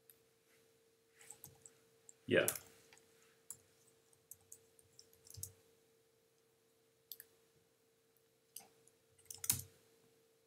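Scattered, irregular clicks of a computer keyboard and mouse being used, over a faint steady hum.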